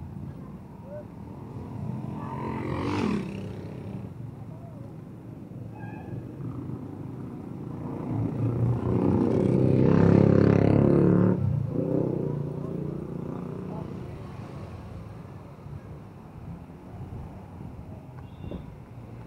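Street traffic: cars driving past close by, one passing about three seconds in and a louder group of engines passing about ten seconds in.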